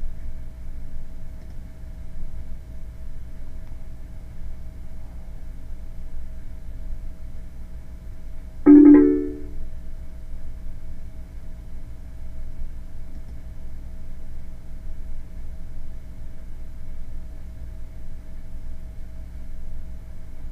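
A Windows system alert chime sounds once, about nine seconds in, the signal of a warning dialog popping up that asks for confirmation. Under it, a steady low hum with a faint steady tone runs throughout.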